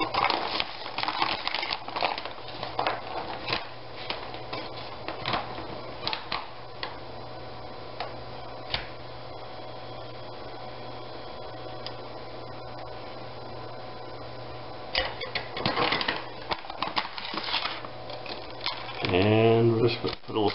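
A foil Mylar storage bag crinkling and rustling as it is handled and packed, in bursts of sharp crackles. There is a quieter stretch in the middle with a single click about nine seconds in, then more crinkling near the end. A steady low hum runs underneath.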